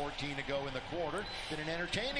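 Basketball game broadcast sound: the ball bouncing on the hardwood court, with short rising-and-falling squeaks and a commentator's voice low underneath.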